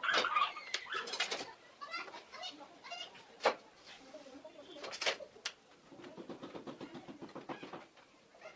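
Faint sharp clicks and taps of a steel rule and set square handled on a board, the loudest about halfway through. Behind them a bird calls in short runs of quick repeated notes.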